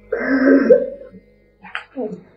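A woman sobbing: one long, loud sob in the first second, then a shorter sob near the end, over soft background music.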